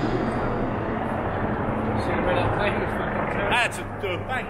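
Street noise with a steady rumble of traffic, and a short stretch of a man's voice near the end.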